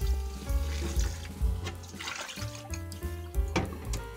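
Tap water running over mixed grains in a mesh strainer as they are rinsed by hand, then draining, under steady background music.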